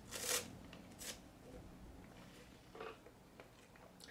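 A drink sipped through a straw from a plastic cup: three short, faint sips, the first, right at the start, the loudest.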